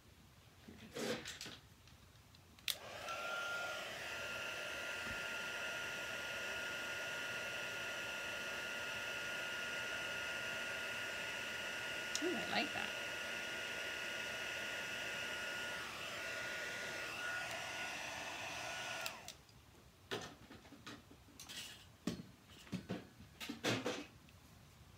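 Embossing heat tool blowing steadily with a thin high whine over its rush of air, switched on with a click about three seconds in and off about 19 seconds in. It is melting clear embossing powder over a stamped ink image to make it shiny.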